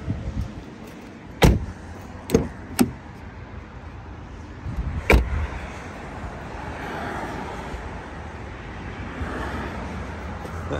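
A few sharp clicks and knocks from a car's doors and controls being handled. The loudest comes about a second and a half in, two smaller ones follow about a second later, and another comes near the middle, all over a steady low background hum.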